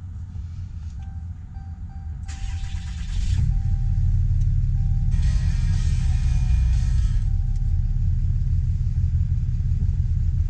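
Dodge Ram 2500 pickup started with its push-button ignition: a dash chime sounds, the starter cranks for about a second, and the engine catches and settles into a steady, low idle. A second rushing noise comes in a few seconds after the start and stops near the middle.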